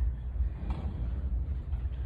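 Steady low rumble of room noise in a large hall, with a faint click a little under a second in.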